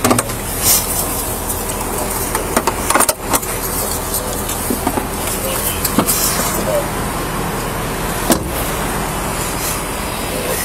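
Steady vehicle and road noise, with a few short knocks and clicks, the clearest about three seconds in and again past eight seconds.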